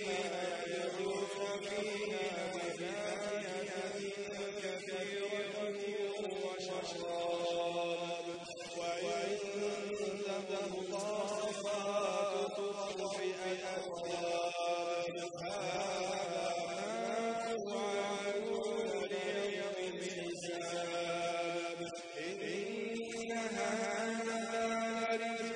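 A solo man's voice reciting the Quran in Arabic in a melodic, chant-like style, drawing out long held notes that slide between pitches, with short pauses for breath.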